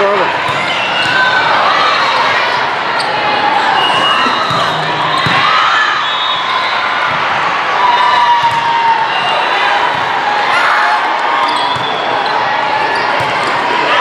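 Volleyball rally in a large hall: repeated sharp hits of the ball, with players and spectators shouting throughout.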